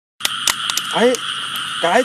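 A steady, high-pitched night chorus of calling animals runs throughout, with a few sharp clicks in the first second.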